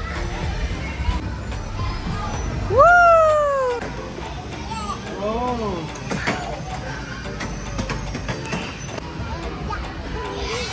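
A young child's high-pitched squeal about three seconds in, rising then falling, the loudest sound, followed by a few shorter cries around five seconds, over background music and the noise of children playing.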